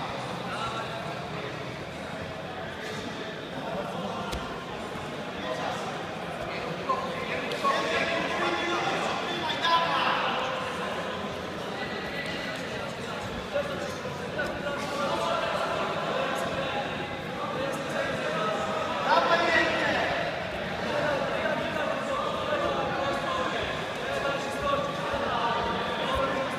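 Several men's voices calling out and talking over one another in a large, echoing sports hall, louder in raised shouts about ten seconds in and again near twenty seconds.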